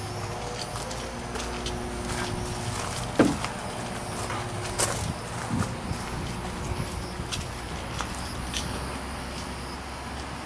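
Footsteps of someone walking outdoors, as scattered light clicks over a steady mechanical hum. A sharp sound about three seconds in drops in pitch and is the loudest thing heard, with a smaller falling sound a couple of seconds later.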